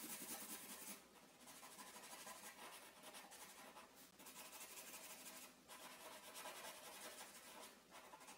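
Faint scratching of a black felt-tip marker colouring in on paper, in steady strokes broken by a few brief pauses.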